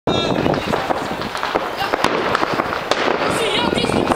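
Fireworks crackling and popping: a dense, irregular string of small sharp bangs, with people's voices mixed in.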